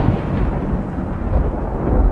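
Thunderstorm sound effect played through an attraction's speakers: a deep rolling rumble of thunder that slowly dies away, swelling again near the end.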